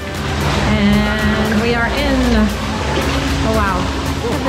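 Voices of bathers calling and shouting, echoing off the stone walls of a cenote cavern, over a steady rush of noise; a few rising and falling calls stand out in the middle and near the end.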